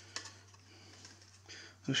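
Hands handling a small circuit board: one light click just after the start and faint soft handling noise, over a steady low hum. A man's voice starts at the very end.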